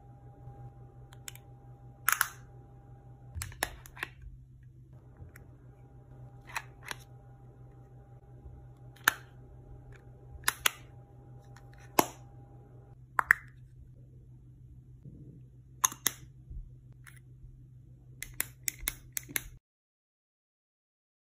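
Small plastic makeup compacts clicking and snapping as their lids and stacked tiers are opened, closed and swivelled by hand: sharp single clicks every second or two, then a quick run of about eight clicks near the end. A steady low hum runs underneath.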